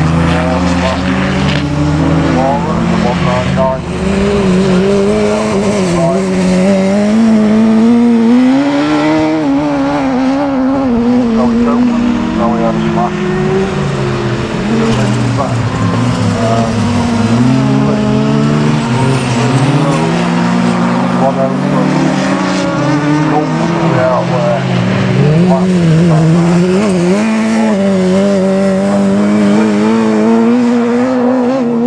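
Several autograss race cars, a saloon and open-wheeled specials, racing round a dirt track, their engine notes rising and falling and overlapping as they rev through the laps.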